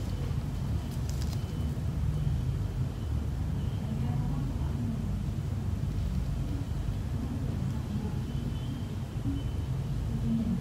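Steady low background rumble.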